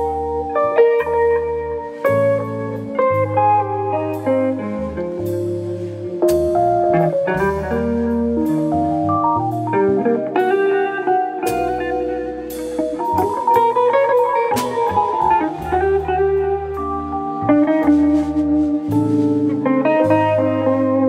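Small jazz band playing live: a hollow-body electric guitar plays melodic lines over a walking electric bass and a drum kit with frequent cymbal strikes.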